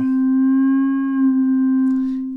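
A single synthesized middle C (C4) from the Orphion iPad touch-instrument app, held as one long, almost pure tone with faint overtones and barely moving in pitch.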